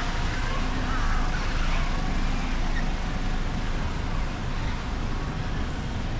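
Street ambience: a steady rumble of road traffic, with indistinct voices in the first couple of seconds and a low steady hum that fades out about halfway.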